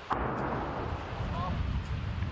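A distant explosion: a sudden boom followed by a low rumble lasting about two seconds. The military say it is militants demining at Donetsk airport.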